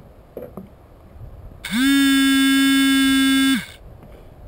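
A loud buzzing tone, one held note for about two seconds, starting about one and a half seconds in; its pitch slides up as it starts and drops as it stops.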